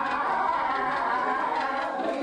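Live Hindustani classical music: a sustained melodic line held over the accompaniment, with few sharp drum strokes.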